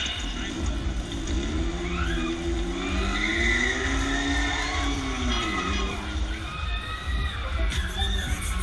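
Predator fairground thrill ride running, its drive whining up and down in pitch as the arms swing round, over a steady low rumble, with high-pitched screams from riders around the middle.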